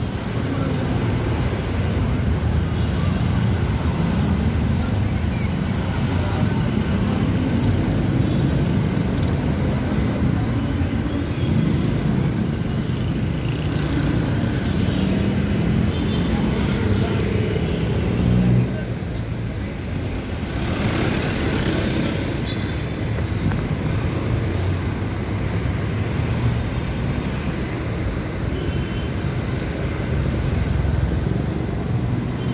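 Steady city street traffic noise, a continuous low rumble of road vehicles, with a louder swell about two-thirds of the way through.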